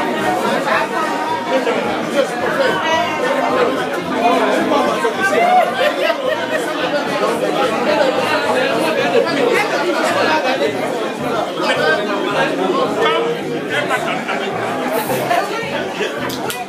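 Many people talking at once: a dense, steady hubbub of overlapping chatter in which no single voice stands out.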